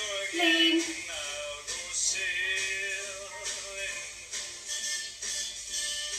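Upbeat pop song playing, with a sung vocal line over the backing track.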